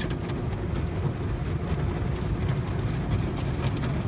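Automatic tunnel car wash heard from inside the car: soapy water and cloth wash strips sweeping over the windshield and roof, a steady deep rushing noise.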